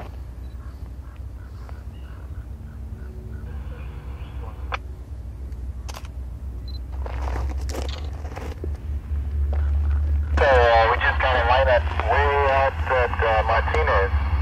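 Diesel-electric freight locomotives hauling a heavy steel coil train, a low engine rumble that grows louder as they draw near. From about ten seconds in, a voice talks over the rumble.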